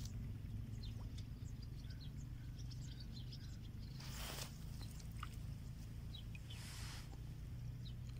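Outdoor ambience: scattered faint bird chirps over a steady low rumble, with two brief rushing noises about four and seven seconds in.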